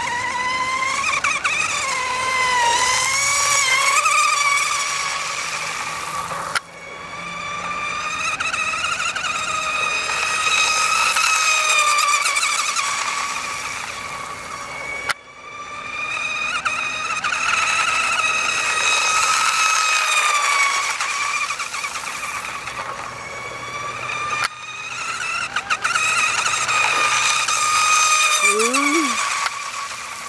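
Radio-controlled outrigger racing boat running fast passes on water, its motor a high-pitched whine that swells and fades as the boat comes by and goes away, the pitch wavering with the throttle. The sound breaks off abruptly three times.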